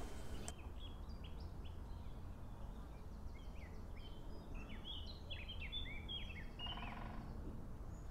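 Birds calling outdoors: scattered short high chirps, a few about half a second in and a busier run of them from about three to seven seconds, over a steady low rumble of outdoor noise.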